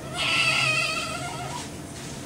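Newborn baby crying: one cry that starts just after the beginning, is loudest in the first second and trails off by about a second and a half.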